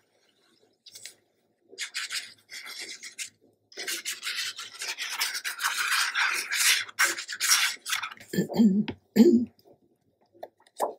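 Tip of a fine-tip glue bottle scraping across the back of a paper panel as a line of glue is laid down, a scratchy hiss in uneven stretches lasting about six seconds. Near the end the paper is handled and flipped, with two soft thumps.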